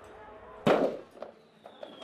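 A single loud bang from the ceremonial iftar cannon firing, about two-thirds of a second in, dying away quickly and followed by a few faint crackles. The shot signals the end of the day's Ramadan fast.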